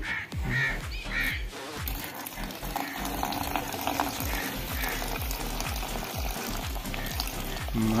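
Liquid pouring from a jug into a plastic bucket of metal scrap, with a steady fizzing hiss as nitric acid starts attacking the copper, under background music with a steady beat.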